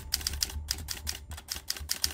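Typewriter sound effect: a rapid, uneven run of key clacks as text is typed out.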